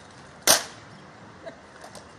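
A rank of soldiers doing rifle drill in unison: one sharp crack of hands slapping rifles about half a second in, then a faint click about a second later.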